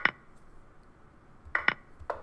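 Short sharp clicks at a computer: one at the start, then two in quick succession about a second and a half in.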